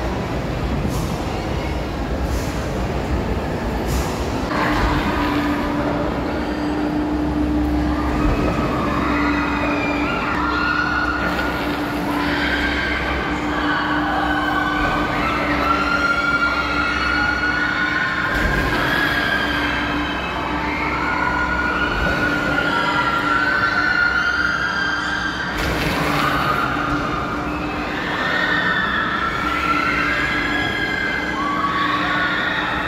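Swinging pirate ship ride in motion: a steady low drone joined about five seconds in by long, wavering high squeals that rise and fall over the rest of the stretch.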